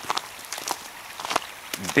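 Footsteps on a snow-covered trail: a few steps at walking pace, about 0.6 s apart, over a low steady hiss.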